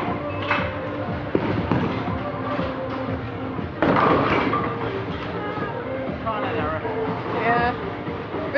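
Bowling alley din: background music and voices, with a sudden loud crash about four seconds in.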